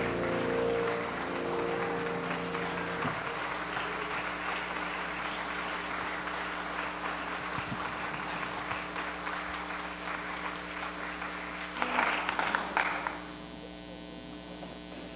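The last piano chord of a song rings out and fades over the first few seconds, under a congregation applauding steadily. The applause swells briefly near the end, then dies away.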